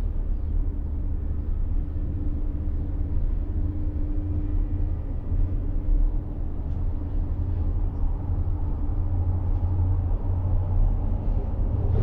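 Steady low rumble inside a moving monocable gondola cabin as it rides the haul rope between towers.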